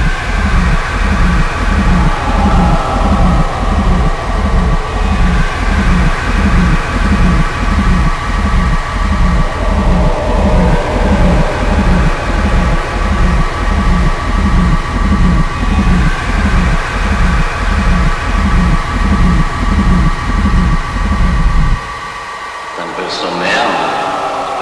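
Speedcore electronic track: a heavy, distorted kick drum beating at a steady pulse under sustained synth tones. About 22 seconds in the kick drops out, leaving the synth, and sharp new hits come in near the end.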